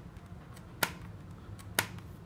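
Two sharp plastic clicks about a second apart from the rear air-vent slider of a full-face motorcycle helmet being worked by hand.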